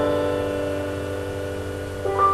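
Backing music: a held keyboard chord slowly dying away, with no new notes.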